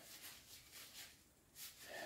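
Near silence: room tone with a few faint, brief soft sounds.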